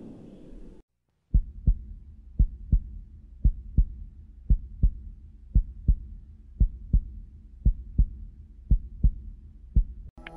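A low rumble cuts off within the first second. After a brief silence, a heartbeat sound effect begins: slow paired lub-dub thumps, about one pair a second, over a faint low hum.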